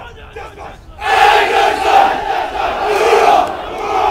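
A platoon of Marine recruits shouting together in unison: one long, drawn-out cry that starts about a second in and is held for over two seconds.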